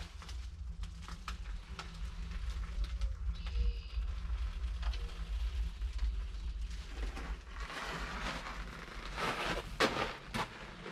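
Handling noise from a handheld camera: a steady low rumble with scattered light clicks, then footsteps on gravel from about eight seconds in.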